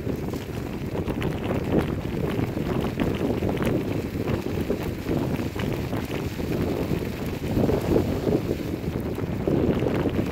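Wind buffeting the microphone over the rolling of a Kickbike Cross Max kick scooter's knobby tyres on a dirt road, with scattered small clicks and rattles.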